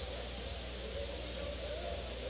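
Background music playing low over a steady low hum.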